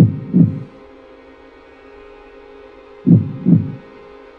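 Heartbeat sound effect: two low double thumps, about three seconds apart, over a steady low drone.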